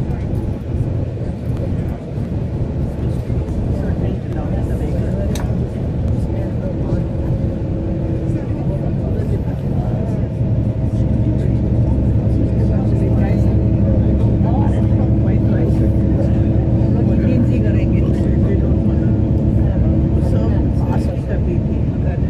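Tour coach driving at motorway speed, heard from inside: a steady low rumble of engine and road noise, with a humming drone that sets in about seven seconds in.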